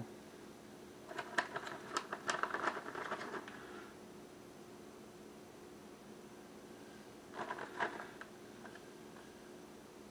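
Light taps and rustles of a hand setting mini pepperoni slices onto a shredded-cheese-topped casserole in an aluminium foil pan, in a cluster from about one to three and a half seconds in and a shorter one near eight seconds. A faint steady hum runs underneath.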